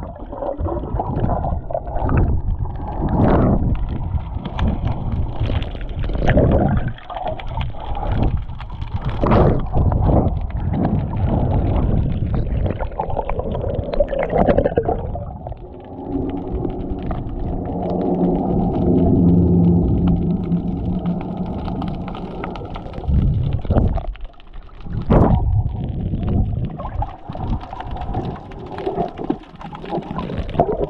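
Water rushing and sloshing against a GoPro action camera held underwater, a heavy muffled rumble broken by repeated splashy surges. For several seconds past the middle a steady droning hum of several tones sits under the water noise.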